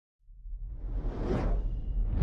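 Intro sound effect: a whoosh rises out of silence and peaks just over a second in, over a deep, steady low rumble.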